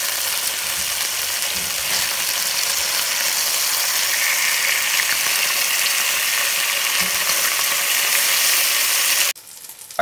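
Chicken breasts searing in hot olive oil in an enamelled cast-iron pot: a steady frying sizzle as they brown on the first side. The sizzle cuts off suddenly just before the end.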